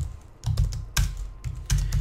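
Computer keyboard keys being typed: a handful of separate keystrokes at an uneven pace as a line of code is entered.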